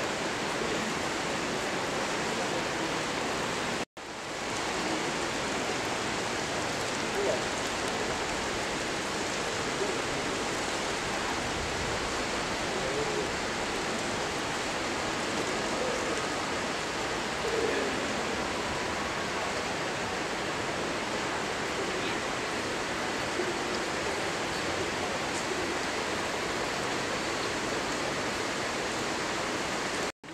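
Steady rain, an even hiss that runs without a break except for a brief dropout about four seconds in.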